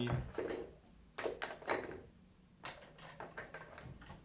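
RCBS single-stage reloading press decapping fired .338 Lapua Magnum brass: several sharp clicks and knocks from the press and the brass cases, in a few clusters about a second apart.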